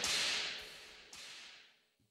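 Breathy, noisy whooshes blown into a hand-cupped microphone by a vocalist: one at the start and another about a second in, each starting sharply and fading out, then silence.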